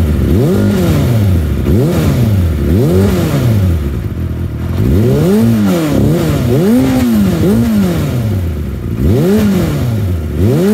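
Kawasaki ZXR400's inline-four engine, just started cold, being blipped on the throttle again and again, the revs rising and falling back about once a second with a short lull near the middle. It is a cold engine that needs time to warm up.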